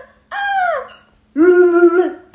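Three high-pitched squeals in a row, the first two sliding down in pitch and the last held on one note, made by a woman's voice as she tears the stuffing out of a plush toy.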